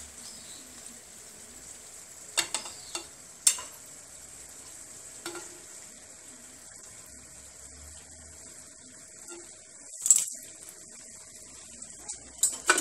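Briouats (almond-filled pastry triangles) sizzling steadily in hot frying oil. A metal skimmer clinks against the pan several times, in a cluster a few seconds in and once more, loudest, near the end.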